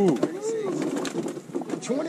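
Men's voices giving drawn-out, rising-and-falling "ooh" exclamations that overlap, followed by a held note.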